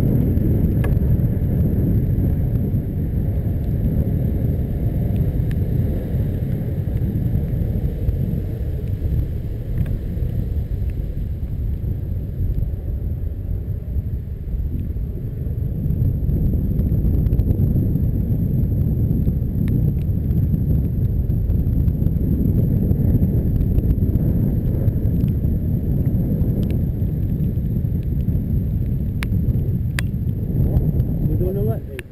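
Steady low rumble of wind buffeting the camera's microphone while cycling along at speed, with a few faint ticks from the bike.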